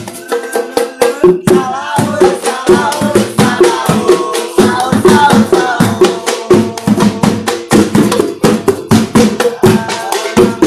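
Sahur patrol band: drums and improvised percussion such as pots beaten by hand in a fast, steady rhythm of several strokes a second, with a group singing along. It is the street music played to wake households for the pre-dawn Ramadan meal.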